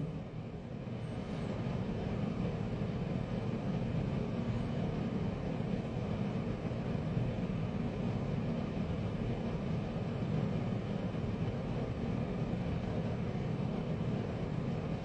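Steady low background rumble with no distinct events, the room's own noise during a pause in speech.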